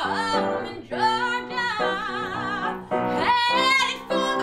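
A young woman singing solo in musical-theatre style. About a second in she holds a long note with vibrato, then near the end she rises to another held note.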